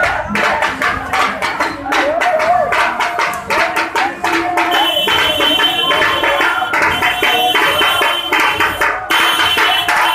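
Procession drums beating a fast, steady rhythm under a crowd's shouting voices. From about halfway through, a steady high tone joins in, breaks off briefly near the end and comes back.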